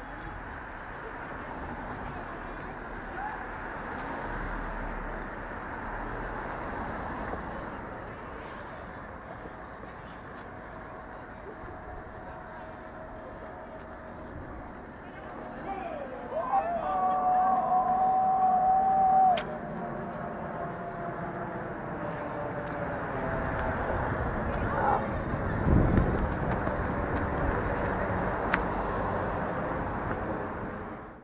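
Indistinct chatter of a group of people with cars passing on a street. A little past halfway, a loud held pitched sound lasts about three seconds.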